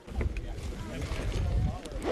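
Wind buffeting the microphone, a fluctuating low rumble, with faint voices of people in the background.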